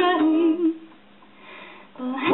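A woman's voice singing the end of a phrase over acoustic guitar, her last note dipping in pitch and ending less than a second in. The music then drops to a quiet pause for the rest.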